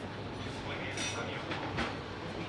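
Small electric motors of an animatronic robot whirring in short bursts, twice, as its head turns, over a steady low background hum.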